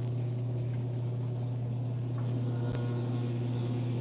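A steady low electrical hum from the refrigerated vending machines, with a single sharp click a little under three seconds in.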